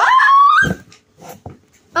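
A child's high-pitched squeal, rising sharply and then held for under a second, followed by a few faint knocks.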